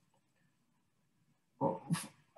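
Near silence, then near the end a man's short vocal sound, a hesitation noise just before he resumes speaking.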